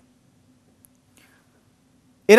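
Near silence: studio room tone with a faint hum, a tiny click just under a second in, and a faint hiss.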